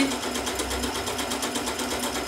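Janome sewing machine running steadily at reduced speed, stitching a long zigzag with a fast, even needle rhythm.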